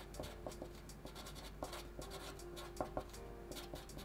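A felt-tip Sharpie marker writing on paper: a run of short, faint strokes as a word is hand-lettered.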